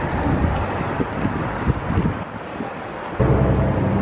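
Wind buffeting the microphone over outdoor street noise. About three seconds in, background music with steady held notes cuts in suddenly and is the loudest thing.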